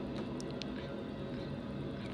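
BNSF intermodal freight train's container cars rolling past in a steady low rumble, with a few brief high squeaks about half a second in.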